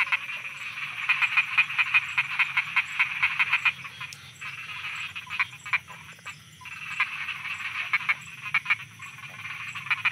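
Chorus of frogs croaking: rapid trains of sharp calls, dense for the first few seconds, thinning out around the middle, then picking up again.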